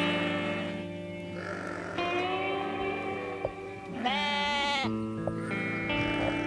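Wiltshire Horn sheep bleating twice over background music with sustained guitar chords; the second bleat, about four seconds in, is the louder.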